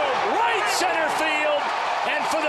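Television announcer's excited voice calling a deep home run drive, over steady ballpark crowd noise.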